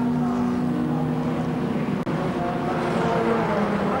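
Historic racing cars running hard at speed, a Mercedes-Benz 300 SLS leading an Austin-Healey 100S: steady engine notes, with a brief break in the sound about halfway through and engine pitch edging up after it.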